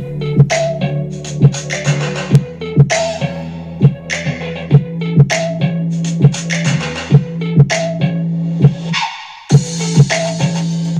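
A song with a steady beat and a heavy bass line playing loud through a RAGU T2 15-watt portable PA speaker, streamed from a phone over Bluetooth at the speaker's top volume; the bass comes through but not prominently. The music breaks off briefly near the end.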